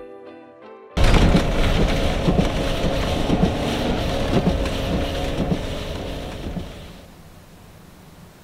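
Background music ends about a second in, cut off by the loud rumbling and thumping of the box truck driving through deep snow, heard from inside the cab, with a steady hum underneath. The noise drops to a quiet hiss about seven seconds in.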